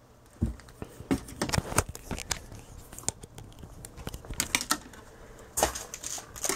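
Scattered clicks, taps and light rustling from test leads and clips being handled and moved into place on a circuit board, with a louder cluster of knocks near the end.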